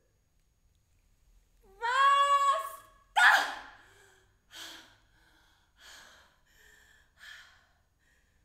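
A woman's voice without words: a high, held vocal cry lasting about a second, then a loud breathy outburst, followed by four short breathy gasps about a second apart.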